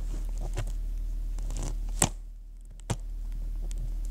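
Hands handling objects close to the microphone: scattered soft rustles and knocks, with a sharp click about two seconds in and another near three seconds. A steady low electrical hum runs underneath.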